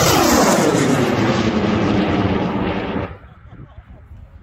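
A J-class high-power rocket motor with Skidmark sparky propellant burning loudly at lift-off and during the climb. Its pitch slides steadily downward as the rocket speeds away. It cuts off sharply at burnout about three seconds in.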